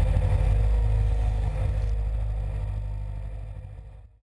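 Excavator engine running steadily as a low hum that fades out toward the end.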